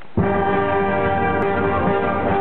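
Pit orchestra accompanying a stage musical, sounding a single sustained chord that starts abruptly just after the opening and is held steady.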